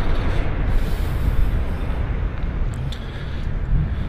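Low, steady rumble of a 2009 Mini Cooper S John Cooper Works' turbocharged four-cylinder engine idling, mixed with wind buffeting the microphone.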